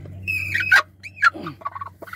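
Broody hen on her nest squawking at a hand reaching in, a sign of being disturbed while sitting. It gives two harsh calls, the first falling, the second rising and falling. A quick run of short clucks follows near the end.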